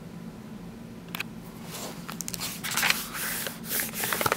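Paper rustling and scraping as a picture book's page is handled and turned, a run of short scratchy strokes starting about a second in, over a faint steady hum.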